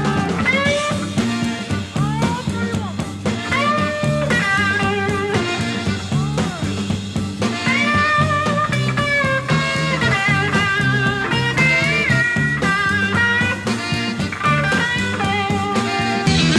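Live electric blues band music: a lead electric guitar plays sustained, string-bent notes with vibrato over a steady bass line and drums.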